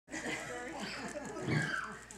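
Indistinct chatter: several people's voices talking over one another, with no clear words.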